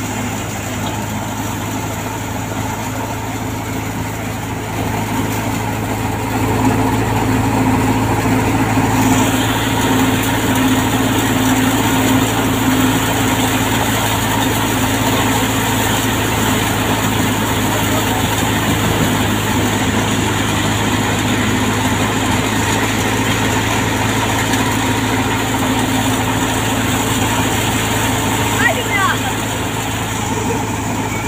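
Belt-driven wheat thresher running steadily, a constant low mechanical drone over the rushing noise of the machine threshing wheat. It grows louder about six seconds in and then holds steady.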